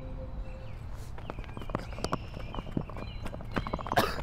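Footsteps on a hard path, about three or four steps a second. Before them, a held ambient music tone fades out within the first second.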